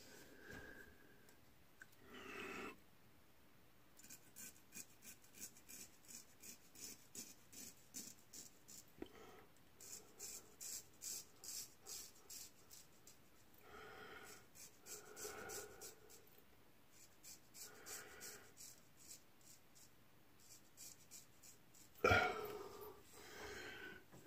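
Straight razor scraping through lathered beard stubble in short repeated strokes, a rhythmic scratching at about two to three strokes a second that pauses briefly midway.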